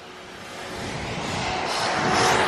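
A road vehicle passing close by: a rushing noise with a low rumble that grows steadily louder as it approaches.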